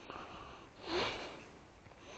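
A person's short breath through the nose with a brief voiced rise, about a second in.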